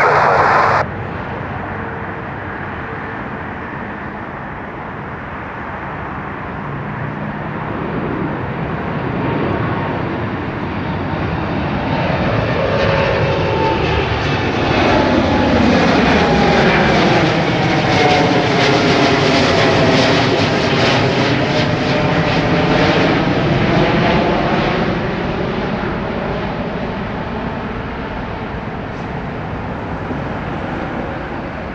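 Boeing 787 jet climbing out after takeoff and passing overhead: a steady jet rumble builds, its engine tones sliding down in pitch as it goes over about halfway through, then fading as it flies away.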